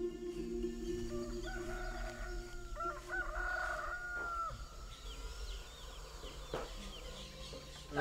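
A rooster crowing once, a long call of about three seconds, followed by a few short high chirps from the chickens.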